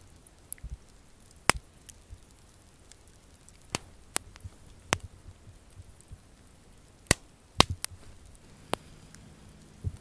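Wood fire crackling: sharp, scattered pops and snaps over a quiet background, with the two loudest coming about seven seconds in.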